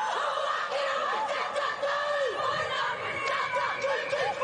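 A women's team performing a Māori haka: a group of women chanting and shouting the war cry together.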